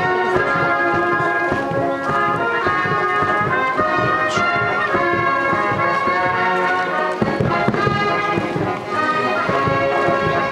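A brass band playing a march: held brass notes changing pitch continuously for the marching columns.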